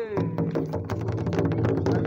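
Rapid, irregular percussive clicks and rattling over a steady low hum, with people's voices mixed in.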